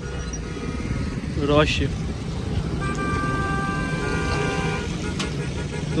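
Engines of queued cars and motorcycles running with a steady low rumble. A brief shout comes about one and a half seconds in, and a vehicle horn is held for about two seconds in the middle.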